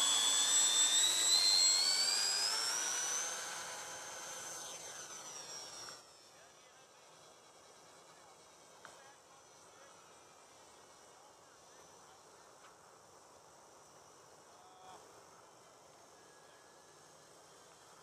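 Electric motors and propellers of a Freewing B-17 RC model plane whining on takeoff, rising in pitch as they spool up and fading away over the first six seconds. After that, near silence.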